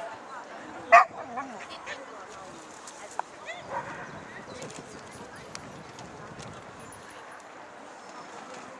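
A dog barks once loudly about a second in, with a few fainter short barks or calls after it, over a murmur of voices.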